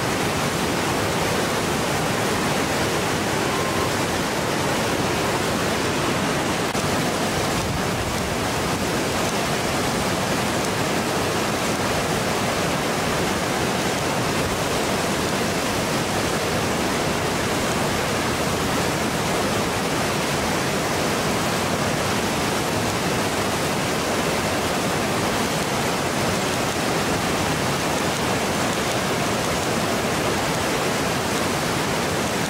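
Whitewater of Lava Falls rapid on the Colorado River, a steady, even rushing noise that does not break or change.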